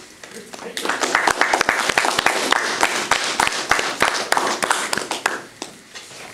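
Applause from a small audience, starting about a second in and dying away near the end.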